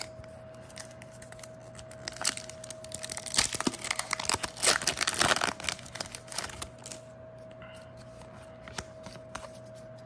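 A foil Pokémon booster pack wrapper being torn open by hand. The crinkling and tearing crackle runs for about four seconds in the middle, loudest around its middle, then stops.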